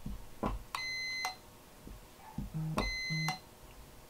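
Continuity tester beeping twice, each a steady half-second tone about two seconds apart, with a click as each beep starts and stops. This is the Sonoff Basic relay closing for its 0.5-second inching pulse and then opening again by itself: the inching function is working.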